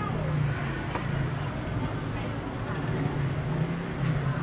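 City street traffic: a steady low engine hum from cars and motorbikes on the road, with people's voices mixed in.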